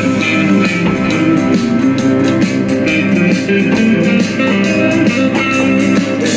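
Rock music with electric guitar over a steady drum beat.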